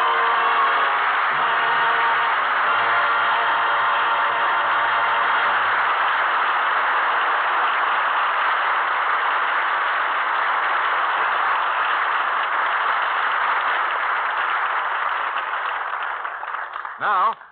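Studio audience applauding steadily as the orchestra's closing music dies away in the first seconds; the applause fades out near the end.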